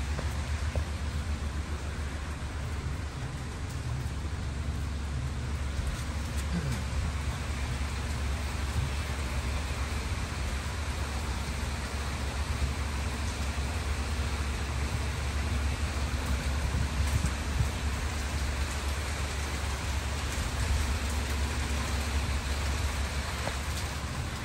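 Steady rain falling, an even hiss with a constant low rumble underneath.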